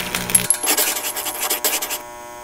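Sound effects of an animated logo intro: a dense crackling, rattling noise full of quick clicks, with a thin high ting about a third of a second in.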